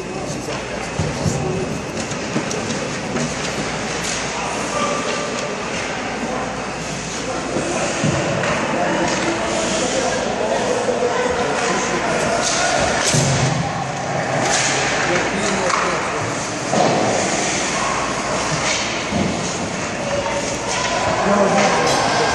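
Youth ice hockey play in an indoor ice rink: skates scraping the ice and sticks and puck knocking and thumping, with indistinct voices of players and spectators echoing in the hall.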